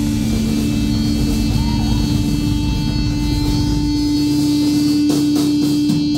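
Live pop-punk band with electric guitars holding one long, steady droning note through amplifiers. The low rumble underneath drops out about four seconds in, and a few sharp hits come near the end.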